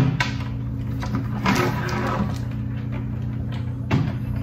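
Faint clicks and light rustling from a motorcycle helmet's plastic visor being handled, over a steady low hum.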